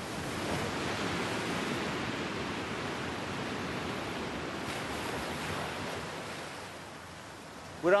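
Sea surf washing in: a steady rushing noise that swells in the first second or two and eases near the end.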